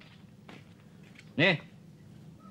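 Speech only: a single short spoken word ("Nih") about one and a half seconds in, over a quiet background.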